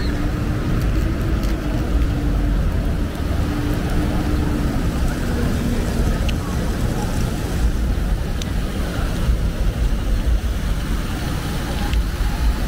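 Downtown street traffic noise with a steady vehicle engine hum that dips slightly in pitch and fades about five seconds in, over a low rumble.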